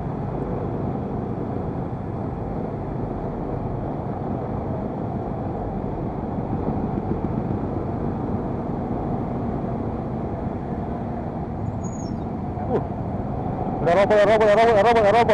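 Motor scooter engine running at low speed in crawling traffic, heard together with the steady rumble of the surrounding cars and motorbikes.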